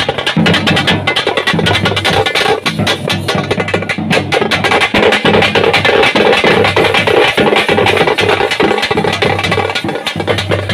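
Loud, fast festival drumming: a percussion band playing a dense, rapid, unbroken beat.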